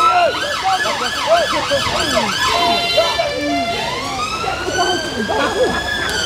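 Emergency-vehicle siren close by: a fast yelp of quick rising and falling sweeps for the first couple of seconds, a brief steady tone, then a slow rising wail. Voices murmur faintly underneath.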